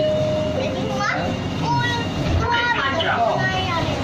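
Young children's voices chattering and calling out, in high, swooping tones, over the steady low hum of a light-rail train running.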